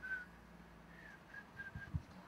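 A person whistling faintly: one short note at the start, then a quick run of four or five short notes about a second in. A soft thump comes near the end.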